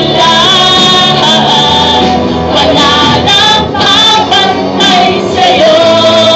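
Live worship band: a woman singing lead in Tagalog into a microphone over electric guitar and bass guitar, with a sustained, swelling melody.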